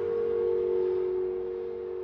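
The last chord of a grand piano ringing out, held and slowly dying away.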